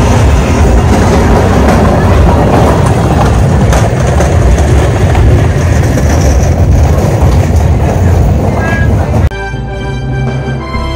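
Loud outdoor festival ambience: crowd noise and music under a heavy deep rumble. About nine seconds in it cuts off sharply and a channel theme tune begins.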